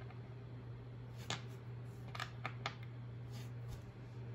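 Faint steady low hum with four light clicks a little over a second in and between two and three seconds in.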